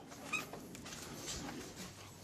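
A door opening with one short high squeak about a third of a second in, followed by a few faint footsteps.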